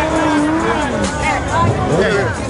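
An engine revving up, holding steady for about a second and then dropping away, over loud crowd chatter.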